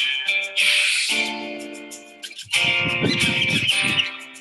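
Guitar strumming the intro of a children's song: chords left to ring and fade, then a busier, louder strumming pattern from about two and a half seconds in.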